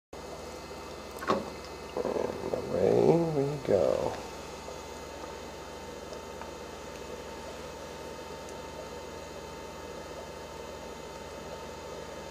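Steady faint electrical hum. A sharp click comes about a second in, and a short stretch of indistinct voice follows between about two and four seconds in, louder than the hum.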